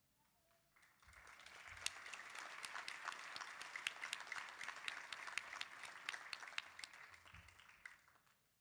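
Audience applauding, starting about a second in, holding steady, then dying away near the end.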